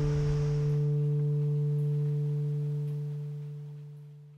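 Soundtrack music ending on one low sustained note that holds steady, then fades out near the end.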